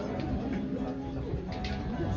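Soft low humming of voices holding a steady note, with a few short sliding pitches near the end, over a room murmur: a cappella singers sounding their starting pitch just before a song.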